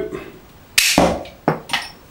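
Spring-loaded plastic bottle-cap gun firing a metal bottle cap: a sharp snap just under a second in, followed by a duller knock and another short click about half a second later.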